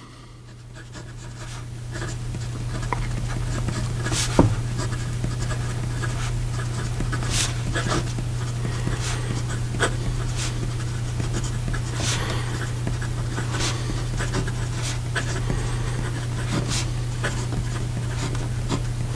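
Fountain pen's fine steel nib scratching across lined paper as a sentence is written, with scattered small ticks as the nib touches down and lifts. Under it runs a steady low hum.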